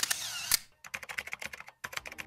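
Rapid, irregular clicking of computer-keyboard typing.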